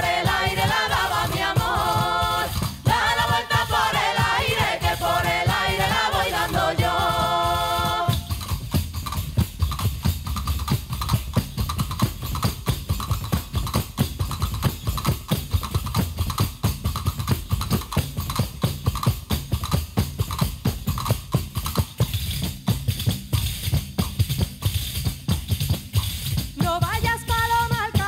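A group of voices sings a folk song over panderetas, frame drums with jingles. About eight seconds in the singing stops and the panderetas play on alone in a steady, driving rhythm of drum beats and jingle rattles.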